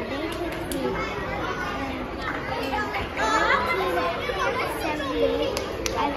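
Background chatter of many children talking at once.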